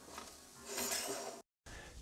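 Faint, brief rubbing of a 3D-printed plastic holder sliding along an aluminium rod, followed by a short dropout to silence.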